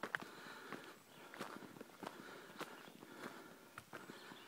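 Footsteps on a dirt forest trail, with a sharp click about every second and smaller scuffs between them.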